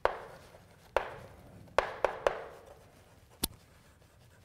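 Chalk knocking against a chalkboard while writing: about six sharp taps at uneven intervals, each followed by a short echo in the room.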